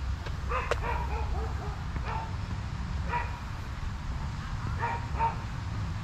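Dogs barking in short bursts, several in the first couple of seconds and more near the end, over a steady low rumble.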